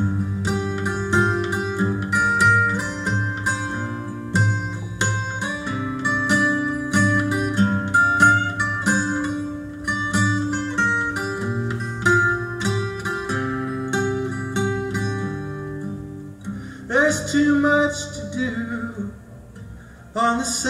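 Instrumental break in a live folk song: an acoustic plucked string instrument fingerpicked in a steady run of ringing notes. Near the end a gliding, wavering pitched sound comes in.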